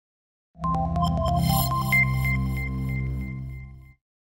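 Short electronic music sting for the Qlik logo outro. It starts about half a second in with a quick run of bright plucked notes over a sustained low synth tone, with a high chime near the middle, then fades and stops abruptly at the end.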